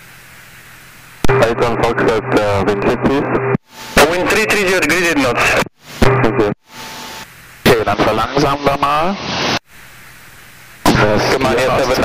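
Aviation radio voice transmissions heard through the aircraft's headset audio. Several short calls cut in and out abruptly, with a low hiss in the gaps between them.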